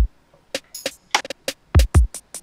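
Programmed trap drum beat playing back: deep kick hits that drop in pitch, with snare hits and hi-hat ticks, after a brief gap at the start.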